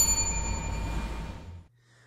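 Title-card sound effect: a bright bell-like ding that rings and fades over a rushing noise, cutting off sharply shortly before the end.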